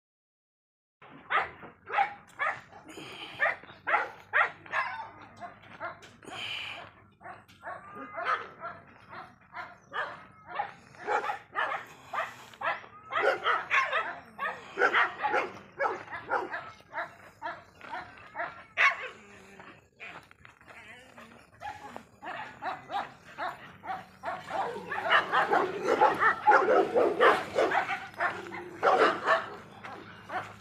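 A dog barking and yelping in short bursts, on and off, starting about a second in and coming thicker and louder near the end.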